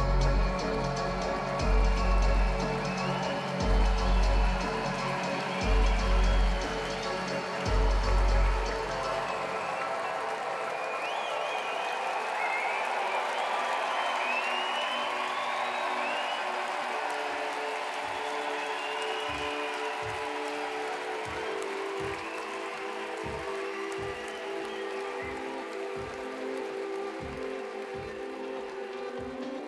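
Live electronic dance music: a deep bass pulse sounds about every two seconds, then drops out about ten seconds in, leaving sustained synth chords. Crowd cheering and whistling rises over the breakdown, and sparse clicking percussion comes in during the second half.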